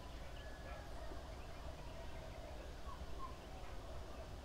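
Faint outdoor ambience: a low steady rumble with scattered distant bird calls.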